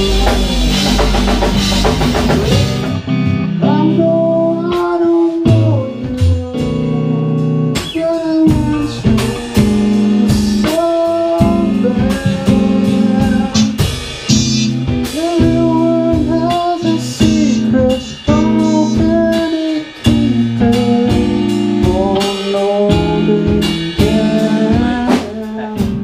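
Live band music: drums, guitars and keyboard playing together for the first three seconds or so, then a man singing over an electric guitar with a lighter accompaniment.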